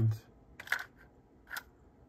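Two short mechanical clicks about a second apart from a Sony TC-K222ESL cassette deck's transport as it is switched into rewind.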